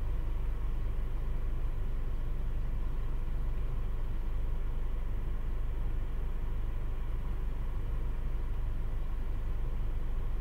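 A steady low mechanical hum and rumble, even throughout, with no distinct knocks or clicks.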